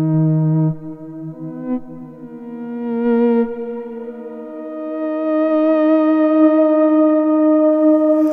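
Therevox ET-4.3 synthesizer playing slow, held notes that overlap and blend through a large reverb. A wavering vibrato comes in on the notes about three seconds in and again later.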